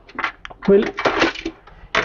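Light metallic clinks and rustling of wire leads and their plug connectors being handled, ending with a sharp click.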